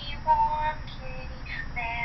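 A high voice singing short held notes, several in a row with breaks between, played back through a phone's small speaker.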